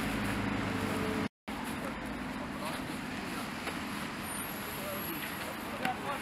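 Steady outdoor background noise with a low engine-like hum in the first second, broken off by a brief dead-silent cut. Soft rustling and a thump near the end as sandbags are handled and set down on plastic sheeting.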